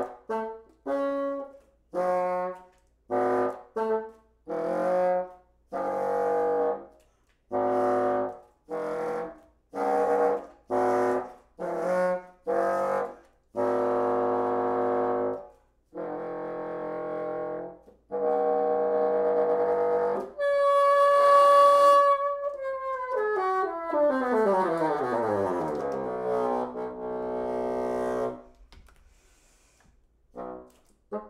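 Solo bassoon playing a contemporary piece: a run of short, detached notes, then a few longer held notes. About two-thirds of the way through comes a loud high note, followed by a long slide down in pitch that ends shortly before the close.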